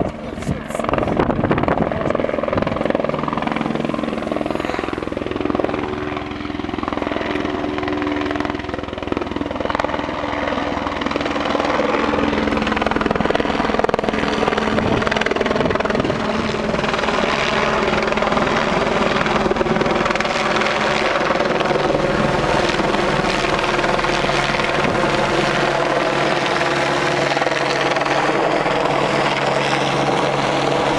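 Helicopter approaching and hovering overhead, its rotor and engine noise growing louder over the first half and then holding steady.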